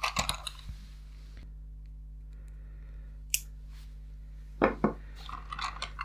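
A few light clicks and knocks from handling the plastic 1984 Tomy Dingbot toy robot: a cluster in the first second, one sharp click midway and two more near the end, over a faint steady hum.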